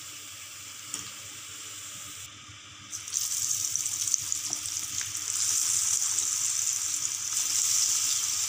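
Onion pakodas deep-frying in hot oil: a steady sizzling hiss. It becomes much louder about three seconds in, once a fresh batch of raw besan batter is bubbling in the oil.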